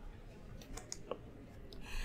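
A few faint computer clicks about a second in, over low room hiss: the presentation slide being advanced.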